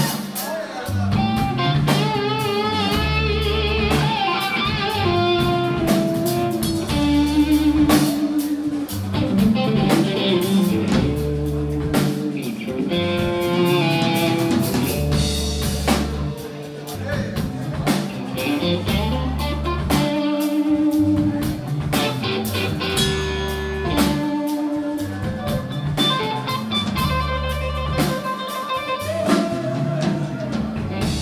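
Live blues-rock band playing an instrumental passage: an electric guitar plays a lead line with wavering vibrato notes over bass guitar and drum kit.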